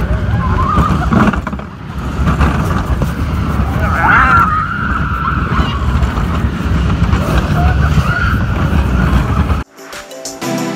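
Theme-park ride vehicle running at speed in the dark: a loud, continuous rumble and rush of noise, with a brief voice-like cry about four seconds in. The noise cuts off suddenly near the end.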